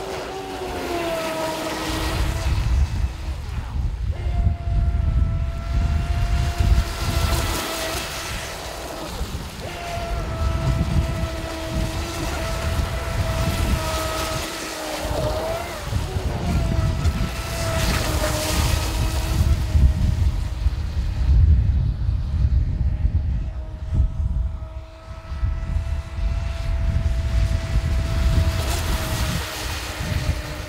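AquaCraft Revolt 30 RC mono boat's water-cooled 1800kV brushless motor and metal propeller running flat out across the water: a steady high-pitched whine that dips, wavers and swells again as the boat turns and passes.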